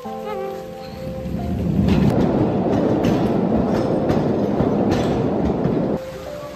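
Music with light mallet-like tones at first. About two seconds in, a loud low rumble with a few clanks takes over: a narrow-gauge mine train running on its rails.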